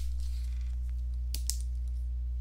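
Steady low electrical hum with two faint, short clicks in quick succession about a second and a half in, typical of a mouse or keyboard at a computer.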